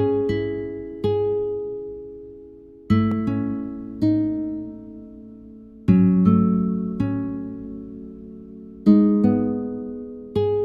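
A slow melody played back on a plucked, guitar-like software instrument, with no other sound. Every three seconds or so a chord is struck, fifth and root together, and a further note follows about a second later; each one rings out and fades before the next.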